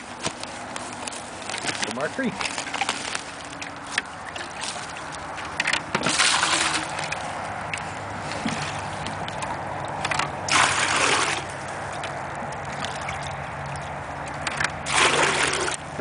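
Water being scooped from a small flowing creek with a black bucket and tipped into white plastic pails: three loud sloshing splashes a few seconds apart, over the steady run of the creek.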